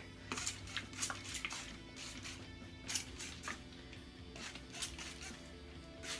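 A trigger spray bottle misting water onto hair in a string of short sprays at irregular intervals, over faint background music.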